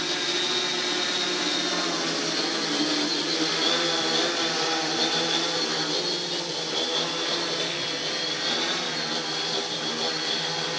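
Hobbyking X4 quadcopter hovering, its four electric motors and propellers giving a steady buzzing whine that wavers slightly in pitch as the throttle is worked.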